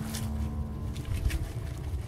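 Hands working wet mud on a plastic tarp: a couple of short wet clicks over a steady low rumble. A held background music note fades out about halfway.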